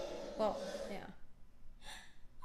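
Speech: a single spoken 'well', then a short, quiet intake of breath near the end.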